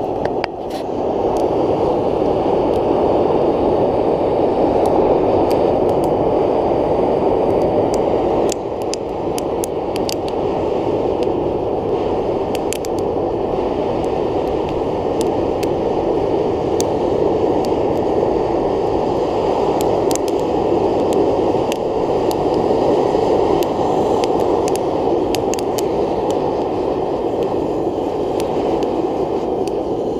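Homemade waste-oil burner's electric blower forcing air through the burner pipe into a bucket fire of cardboard and pine. It makes a steady rush of air with scattered crackling from the burning wood, and dips slightly in level about eight seconds in. It is running on air alone because the used motor oil is not being drawn through the feed line.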